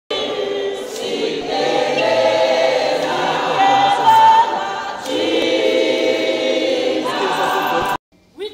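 A crowd of protesting pensioners singing a protest song together. The singing cuts off abruptly just before the end.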